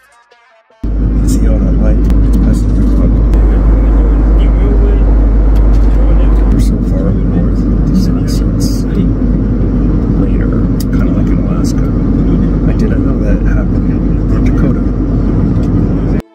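Loud, steady in-flight cabin noise of a Boeing 737 airliner, a deep rumble of engine and airflow noise that starts suddenly about a second in. A man's voice talks under it.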